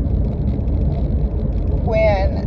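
A car's steady low rumble of engine and road noise, heard from inside the cabin.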